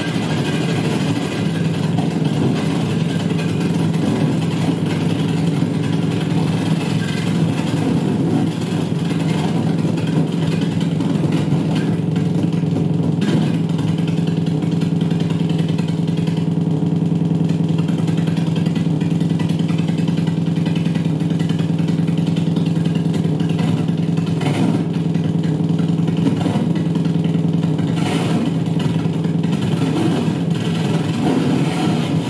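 Live harsh noise music: a loud, dense wall of electronic noise from effects gear through an amplifier, a steady low drone under constant hiss, with a few brief sharp crackles flaring up.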